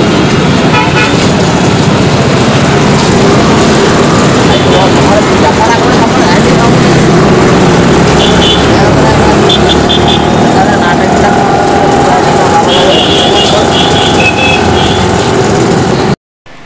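Busy roadside street noise: motor traffic running steadily with short vehicle horn toots several times, over people talking nearby.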